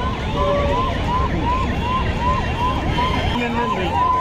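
Police vehicle siren in a fast yelp, its pitch rising and falling about three times a second without a break, over the chatter of a crowd.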